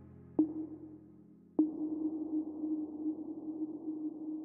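Soft ambient background music: a sustained synth note, re-struck about half a second in and again about a second and a half in.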